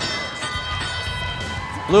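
A bell struck once, ringing out over about two seconds above the crowd noise of the arena: the field sound that marks the start of driver-controlled play.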